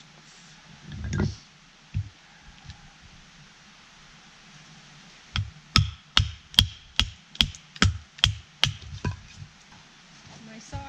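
Batoning with a knife: a wooden baton strikes the spine of a knife set into a piece of firewood, about ten sharp blows in quick, even succession at roughly two and a half a second, starting about halfway through. A single duller knock comes about a second in.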